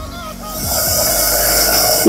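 Thick mutton masala bubbling and sizzling in a clay handi, still cooking from the pot's retained heat just after the gas flame is turned off. The hiss builds from about half a second in and cuts off at the end.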